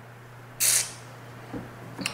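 Pause in speech: one short, sharp hiss about half a second in, over a steady low hum.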